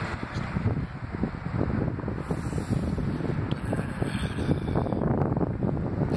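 Wind buffeting the microphone: a gusty low rumble that keeps rising and falling.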